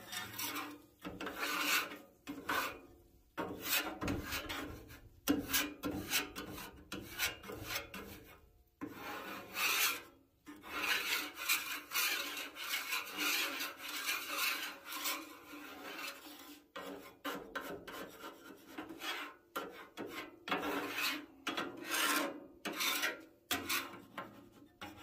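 Stainless steel griddle scraper dragged across a flat steel griddle top in repeated scraping strokes of uneven length, with short pauses between. It is clearing warm bacon grease off the griddle.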